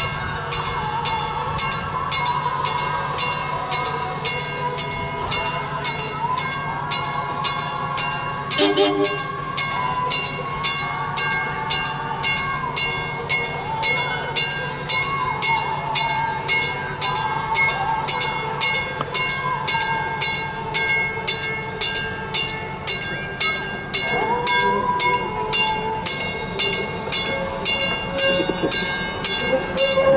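Chicago and North Western bi-level passenger train rolling slowly up to and past the listener: a steady low drone, a regular ringing about twice a second, and wheels squealing in pitches that rise and fall. The sound grows louder near the end as the cab car draws alongside.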